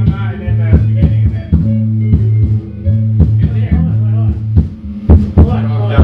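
Ska band rehearsing: electric bass holding long low notes under electric guitar, with drum-kit hits keeping the beat throughout.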